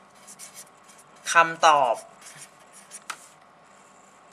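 Pen writing strokes, short scratchy sounds in several bursts, with a brief spoken sound about a second and a half in and a small click near the end.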